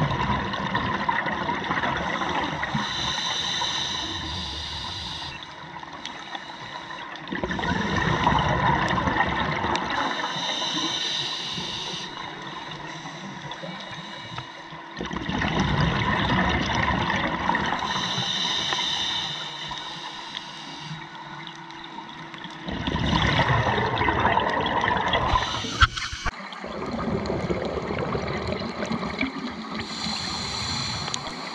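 Scuba diver's regulator breathing underwater: a loud rush of exhaled bubbles about every seven to eight seconds, four times, each followed by a quieter hissing inhale. A single sharp click near the end.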